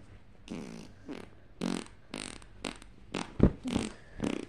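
A child's mouth sound effects for a toy fight, short breathy and buzzing bursts, then sharp knocks as plush toys and a toy figure are bashed together, the loudest about three and a half seconds in.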